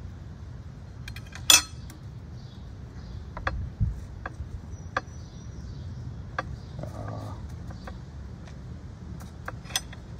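Steel bonsai scissors snipping through thick ficus roots: a scattered series of sharp metallic clicks, the loudest about one and a half seconds in, with a dull knock near four seconds.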